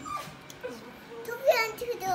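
Young child's voice, with a short, high-pitched rising squeal about one and a half seconds in, the loudest sound here.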